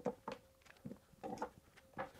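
Cordless impact tools and their plastic battery packs being handled: batteries pulled from the tools and the tools and packs set down on a workbench, about five light clacks.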